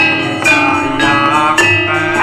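Javanese Banyumasan gamelan playing an ebeg piece: bronze metallophone keys struck with mallets ring out about twice a second over kendang drums, with a woman's voice singing.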